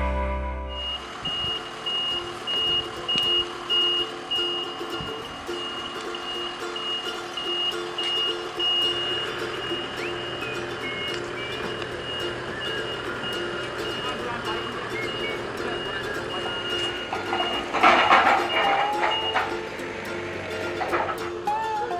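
A truck's reversing alarm beeping in a steady repeated pattern as a trailer carrying brewery equipment is manoeuvred, over vehicle noise, with voices and a louder stretch of sound near the end.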